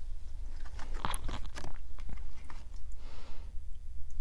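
Tarot cards being shuffled by hand: a string of short papery snaps and rustles, busiest in the first half, over a steady low hum.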